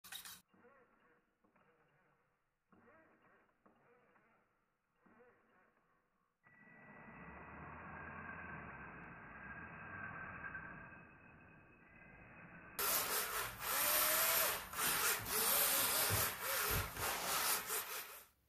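Near silence for about six seconds, then the whine of a mini RC drift car's small electric motor, swelling and fading. From about two-thirds of the way in it gets much louder, with the pitch going up and down as the motor revs.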